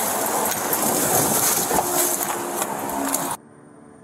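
Loud rustling and scuffing against a police body camera's microphone as an officer grapples with a person in thick foliage. The noise stops abruptly a little over three seconds in, leaving a faint low hum.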